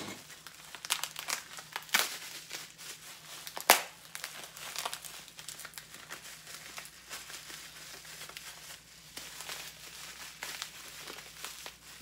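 Wrapping on a package of trading cards being crinkled and pulled open by hand: a run of irregular crinkles and crackles with a few sharper snaps, the loudest about four seconds in.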